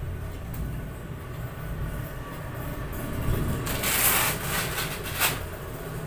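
A manual blood pressure cuff being released and taken off the arm at the end of a reading: a rasping burst about four seconds in, then a sharp click just after five seconds, over a steady low rumble.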